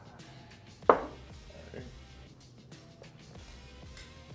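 A glass cologne bottle set down on a wooden tabletop: one sharp knock about a second in, over background music.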